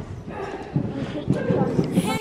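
A horse cantering on the sand footing of an indoor arena, several hoofbeats in a row, with a voice in the background.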